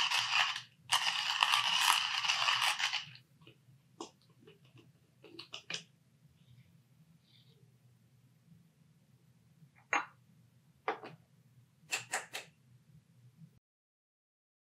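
Hand-cranked coffee grinder grinding coffee beans: a gritty crunching in two spells over the first three seconds, then the cranking stops. Faint clicks and scrapes follow as the grinder is handled, with a few sharper clicks near the end.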